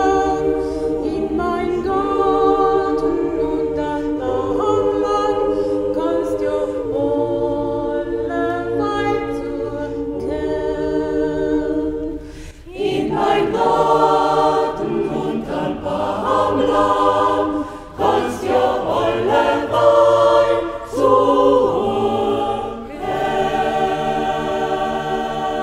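Mixed choir singing a dialect folk song a cappella: a woman's solo voice over a softer choir accompaniment, then after a brief break about halfway through the full choir comes in louder.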